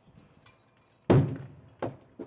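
A 1/3-scale model of a steel spent-fuel cask (ENUN 32P) hitting the drop-test target pad about a second in: one heavy, loud impact that dies away over about half a second. A smaller second knock follows just under a second later.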